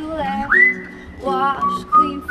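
Acoustic guitar with human whistling over it: a whistle slides up to a high held note about half a second in, and a lower whistled note follows near the end, with short wordless sung notes between.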